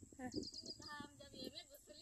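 A soft voice in a sing-song tone, with a quick run of about five short high chirps about a third of a second in.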